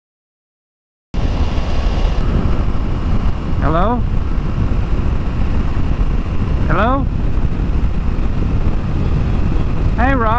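Motorcycle riding noise on the rider's microphone: a steady low rumble of engine and wind that starts suddenly about a second in. Twice, about three seconds apart, a short rising tone sounds, an incoming phone call ringing through to the rider's headset.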